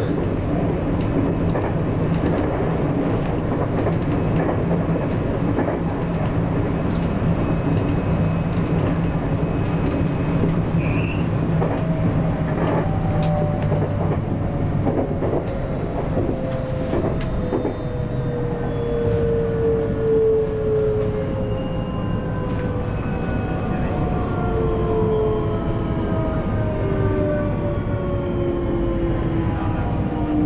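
JR West 521 series electric train running, heard from the cab: a steady low hum with scattered rail clicks. From about halfway through, the whine of its inverter-driven traction motors falls steadily in pitch as the train slows for a station.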